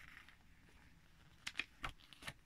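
Pages of a small paper instruction booklet being turned and flattened by hand: a soft rustle at the start, then three quick, crisp paper clicks near the end.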